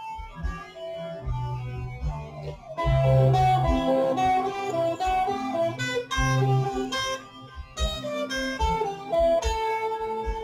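Electric guitar playing a lead melody of single notes, louder and busier from about three seconds in, over a backing track with bass and drums.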